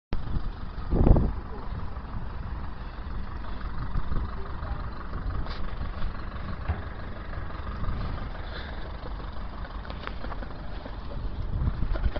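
Steady low rumble of road traffic, with faint voices underneath and a dull thump about a second in.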